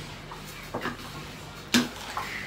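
Steam iron being worked over a shirt on an ironing board: soft sliding and handling noises with a couple of small clicks, and a short sharp knock near the end.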